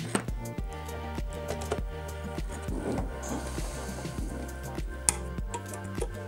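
Background music with a steady beat, and one sharp click about five seconds in.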